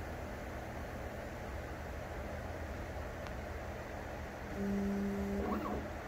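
Prusa XL 3D printer running its pre-print nozzle-cleaning and Z-axis routine: a steady low hum of its fans and motors. A brief, louder steady hum comes in near the end.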